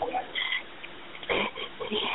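A wounded woman's short, strained breaths and vocal sounds of pain over a phone line, with the strongest sound about a second and a half in.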